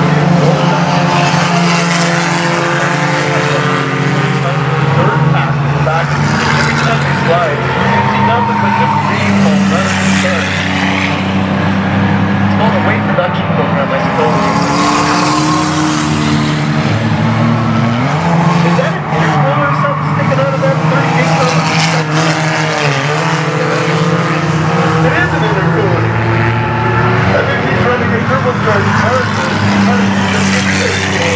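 Several old street cars racing around a paved oval, their engines running hard together. Cars pass by with their engine pitch rising and falling.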